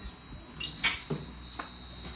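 A steady, high-pitched electronic tone sounds without a break, like an alarm or buzzer, with a couple of faint clicks beneath it.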